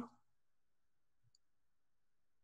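Near silence in a pause between spoken sentences: the tail of a spoken word at the very start, then one faint brief click a little past halfway.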